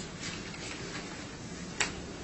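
Quiet room tone with a single short, sharp click near the end.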